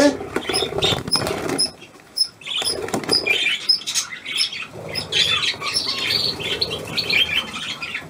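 A flock of budgerigars chattering with many short squiggly chirps, with wings fluttering and rustling as the birds are handled and caught by hand.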